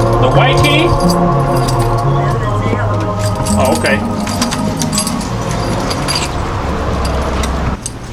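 Background music with sustained tones over a bass line that steps from note to note. It cuts off abruptly just before the end.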